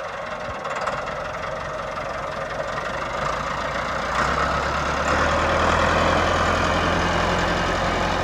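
Massey Ferguson 375 tractor's diesel engine running steadily as it drives, getting louder about halfway through as the tractor comes closer.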